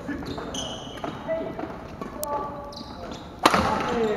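Indoor badminton hall sounds: voices in the hall, short high squeaks, and a sharp loud knock about three and a half seconds in.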